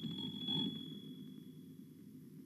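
Faint background noise with a thin, high, steady ringing tone that fades away about one and a half seconds in.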